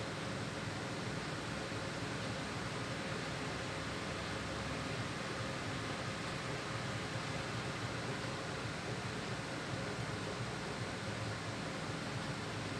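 Steady background hiss of room noise with a faint, even hum, unchanging throughout.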